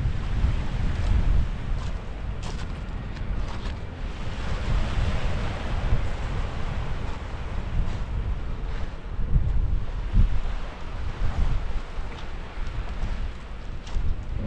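Strong wind buffeting the microphone in gusts, over small waves washing onto a pebble beach of a calm sea.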